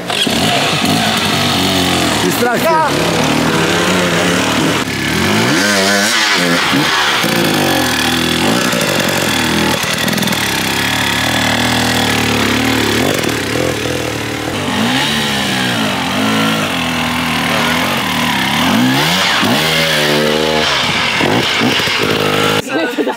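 Dirt bike engines revving hard and repeatedly, the pitch rising and falling again and again as the bikes work up a steep forest climb.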